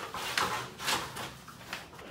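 Thin plastic sheeting rustling and swishing as it is brushed and moves, in four or so quick crinkly sweeps.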